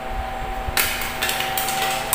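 Plastic clicks and knocks from a wall-switch mounting plate and its cover being handled and set down, with a few sharp clicks in the second half.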